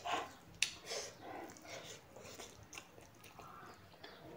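Close-up mouth sounds of eating: irregular chewing and lip smacking on a mouthful of rice and beef, with a sharp click a little after half a second in.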